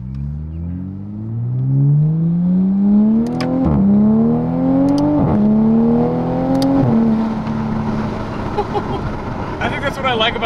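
Turbocharged B58 3.0 L straight-six of a 2020 Toyota Supra (A90), fitted with a titanium single-exit exhaust and catted downpipe, accelerating hard in sport mode, heard from inside the cabin. The revs climb and the ZF eight-speed automatic upshifts three times in quick succession, each time dropping the pitch with no pause. The engine then settles to steady revs for the last few seconds.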